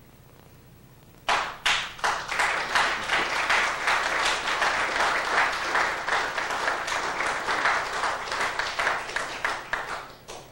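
Audience applause, breaking out about a second in after a brief quiet. The clapping is dense and steady and thins out near the end.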